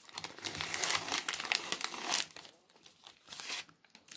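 Sterile paper-and-plastic peel pouch crinkling and rustling as it is worked open by hand. The crinkling is busiest for the first two seconds or so, then thins to occasional rustles.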